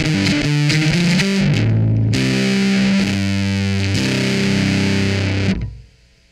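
Electric bass (Ibanez SR300E) played through a fuzz pedal into a Fender Rumble 100 amp on its clean channel, heavily distorted. A quick riff of short notes comes first, then three long held notes, cut off about half a second before the end.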